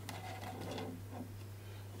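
Steady low hum with faint handling noise from a thin clear plastic soft protector and a card being pulled out of it.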